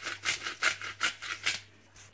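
Hand-twisted seasoning grinder grinding over a pan in quick rasping strokes, about five a second, stopping about a second and a half in.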